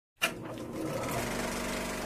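A film projector is switched on with a sharp click, then runs with a steady mechanical clatter that grows a little louder.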